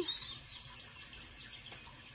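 A woman's voice trails off in the first moment, then quiet room tone: a faint, even hiss with no distinct sound.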